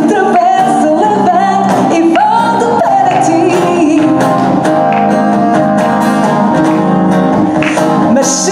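A woman singing a Portuguese song into a microphone, accompanied by a strummed steel-string acoustic guitar, performed live.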